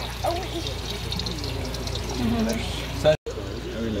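Steady trickling and bubbling water from an aquarium's pump and filter, under indistinct voices.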